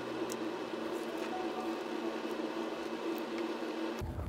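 Faint rustling and creasing of a sheet of origami paper being folded in half and pressed flat by hand, with a few soft ticks over a steady low hiss.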